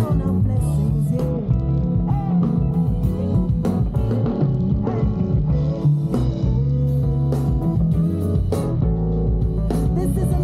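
A live band playing through the stage sound system, led by guitar with a strong bass line and drums keeping the beat.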